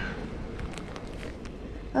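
Quiet open-air background with a few faint, scattered taps, and a man's voice starting right at the end.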